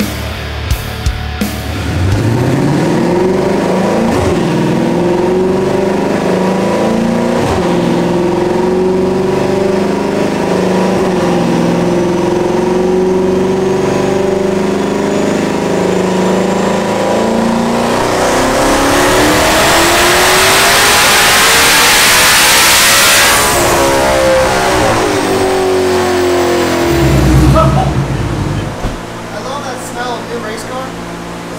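Twin-turbo 2020 Shelby GT500's V8 running on a chassis dyno: it holds steady revs in gear, then makes a full-throttle pull with a high whine rising with the revs. The pull cuts off sharply, the revs fall away, and there is a loud low thump near the end.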